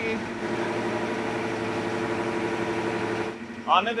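Steady mechanical hum with several held tones, cutting off abruptly a little over three seconds in.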